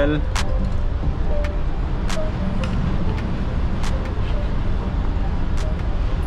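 Steady low rumble of a ship's engine-room machinery running under way, heard inside the engine control room. A few light clicks and taps sound through it.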